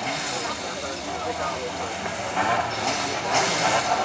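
Engines of a row of autocross race cars running together on the start grid, a steady mechanical din.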